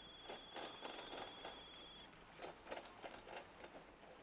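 Near silence: faint outdoor course ambience, with a thin steady high-pitched tone that stops about halfway through and a few scattered faint ticks.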